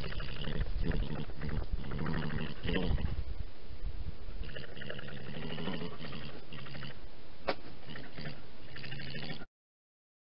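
A European badger grunting and snuffling close to the microphone. The low grunts go on, with a single sharp click about seven and a half seconds in. The sound cuts off suddenly near the end.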